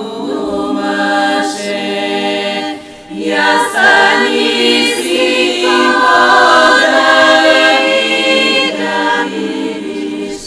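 Bulgarian women's folk choir singing a cappella in close harmony, holding long notes. There is a short breath break about three seconds in, then a louder, fuller passage.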